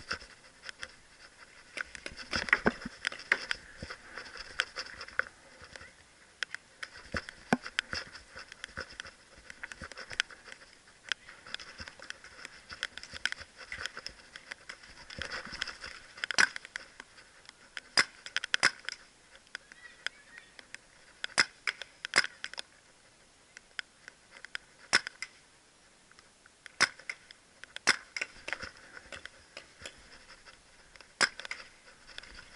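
Paintball markers firing in scattered single shots and short quick strings of two or three, sharp pops at varying distances.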